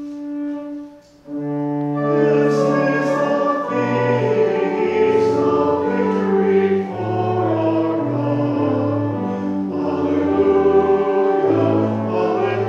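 Church organ playing a slow hymn in sustained chords. A brief break comes about a second in, then full chords with a moving bass line.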